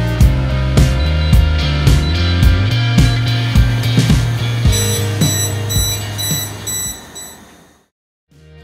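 Background rock music with drums and guitar, fading out near the end. From about halfway, a gas leak detector alarm sounds over it as a rapid series of high-pitched beeps lasting a few seconds.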